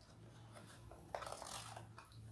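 Faint crinkling and crackling of a cardstock favour box being unfolded by hand, a short cluster of it in the second half.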